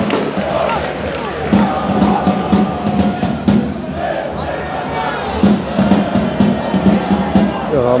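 Football supporters in the stands chanting together over a steady drumbeat.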